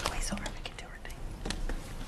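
Low, murmured speech close to a microphone, mixed with several sharp clicks and rustles.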